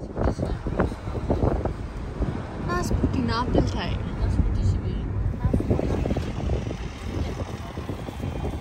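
Outdoor rumble, like traffic and wind on a phone's microphone, with indistinct voices talking now and then.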